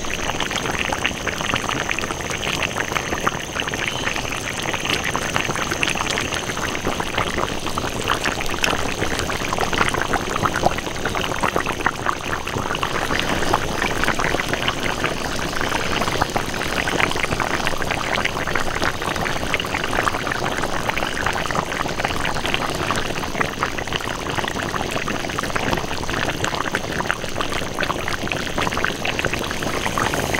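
A large iron wok of yak rib stew boiling hard on high heat: thick red broth bubbling and popping densely and without a break.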